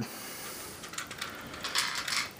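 Lego plastic flatbed being slid forward along the truck's frame by hand: a quiet scraping rub with a few light clicks, the scrape brightening near the end.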